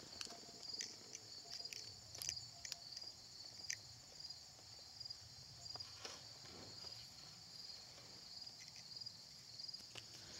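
Faint, steady chorus of insects trilling in high, evenly pulsing notes, with a few light clicks.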